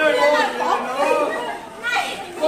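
Several people talking over one another in lively group chatter.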